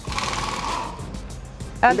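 A scraping noise lasting about a second as the outer Bearing Buddy cap is worked off a trailer wheel hub, opening it for greasing the wheel bearings.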